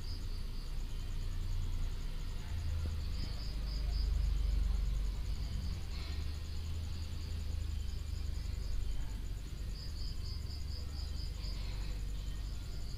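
Insects chirping in runs of rapid, evenly spaced high pulses, over a steady low rumble. A single light tap about six seconds in.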